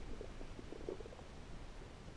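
Muffled underwater noise picked up by a camera held below the surface while snorkeling: a steady low rumble with a few faint crackles and pops.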